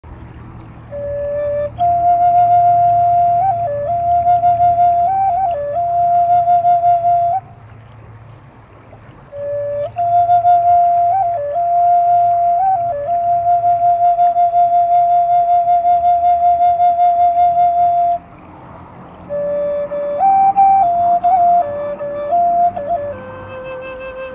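Native American flute playing a slow melody in three phrases with short pauses between, mostly long held notes that pulse steadily with vibrato and step between a few nearby pitches.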